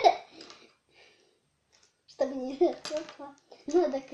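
Children's voices: a child's voice trails off at the start, then after a pause of about a second and a half the children speak again.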